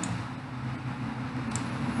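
Steady low hum and room noise, with a faint click about one and a half seconds in.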